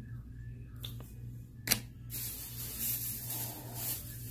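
A sharp knock, then a steady rustling and handling noise as she rummages for the next item, over a low steady hum.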